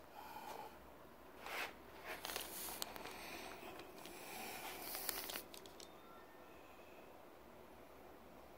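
Faint rustling and scuffing with a few small clicks, loudest in the middle few seconds, then only a low room hum.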